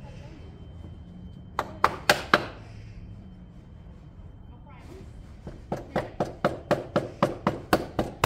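Ratchet wrench clicking as sump-pan bolts are undone: three sharp clicks, then after a pause an even run of clicks about four a second.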